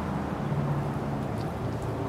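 Steady low mechanical hum with a rushing noise behind it, with no change through the pause.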